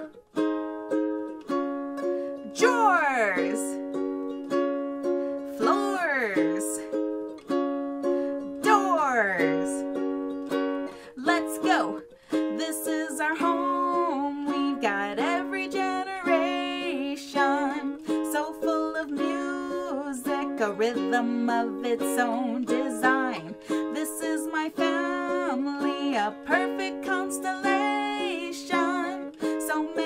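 Ukulele, capoed at the first fret, strummed in a steady down-up chord pattern, with three swooping pitch glides in the first ten seconds. From about twelve seconds in, a woman sings along over the strumming.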